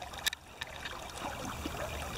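Shallow stream water running steadily, with light splashing around a landing net held in the water with a fish in it; a few short splashy ticks come near the start.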